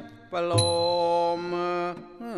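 Thai brass band (trae wong) music: a held chord breaks off at the start, and after a brief lull a new sustained chord enters with a bass drum hit about half a second in, holding until just before the end.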